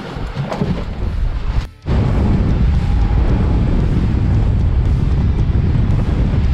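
Wind buffeting the microphone and the rush of water and spray as a boat runs fast through rough, choppy sea, a steady loud low rumble. It starts abruptly about two seconds in, after a briefer stretch of quieter deck noise.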